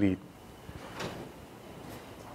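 The last word of a man's sentence, then quiet room tone in a large hall, with a faint knock about a second in and a weaker tick near the end.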